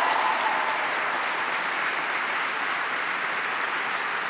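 A large audience applauding steadily, a standing ovation, easing off slowly.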